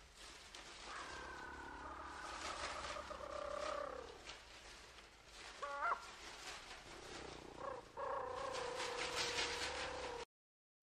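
Long drawn-out animal calls, each held at a steady pitch: one from about a second in to four seconds, a short rising call near six seconds, and another from eight seconds on, over a faint crackling hiss.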